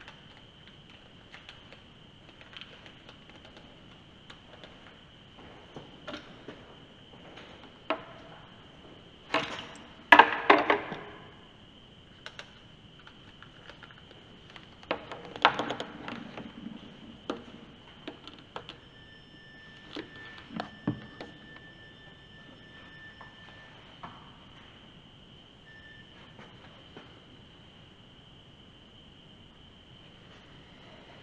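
A ghost-hunting proximity device gives a steady high electronic tone throughout. A second, lower tone comes in for about five seconds past the middle, as the device sounds when something comes near. Scattered knocks and footstep-like thuds are heard, the loudest around ten seconds in.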